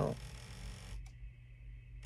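A single faint click about a second in, over a steady low background hum: a kitchen cabinet door being pushed shut overhead.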